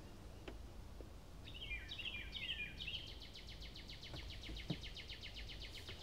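A songbird singing faintly: three quick down-slurred whistles, then a fast even run of short high notes, about five a second.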